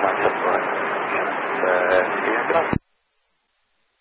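A pilot's voice over a VHF aviation radio, reading back a descent clearance in a band-limited transmission thick with hiss. It cuts off abruptly about three-quarters of the way through, leaving dead silence.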